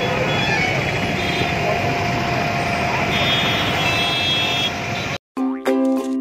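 Busy road traffic and crowd noise: a steady hum of vehicles and chattering voices, with a high tone sounding for about a second and a half past the middle. Near the end the sound cuts out abruptly and plucked ukulele music starts.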